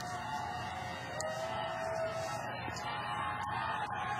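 Football stadium crowd noise under sustained music tones, with one longer held note from about a second to two seconds in.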